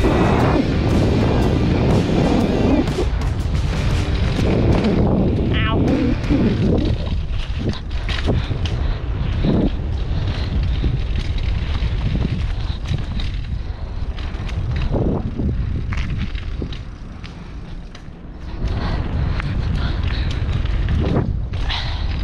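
Mountain bike descending a rough dirt and concrete trail: wind buffeting the camera microphone over tyre rumble, with frequent rattles and clatters as the bike hits bumps. There is a brief squeal about six seconds in. Things ease off briefly a few seconds before the end, then pick up again.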